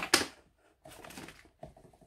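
Cardboard kit box being handled and tipped open, with paper sheets and a small plastic bag sliding out: a sharp scrape and rustle at the start, then a softer rustle about a second in and a few light clicks.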